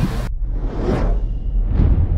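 Sound-effect whooshes over a deep, steady low rumble, as in an animated logo sting. Two whooshes swell and fade, the second about a second after the first.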